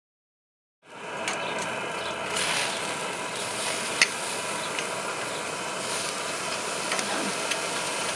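Pork chops sizzling on a hot grill grate: a steady hiss that starts about a second in, with a few sharp clicks of metal tongs, the clearest about four seconds in.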